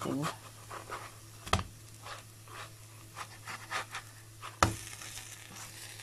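A spatula scraping and knocking against a nonstick frying pan while turning piaya, with many short scrapes and two sharp knocks, one about a second and a half in and one near five seconds. A faint frying sizzle runs underneath.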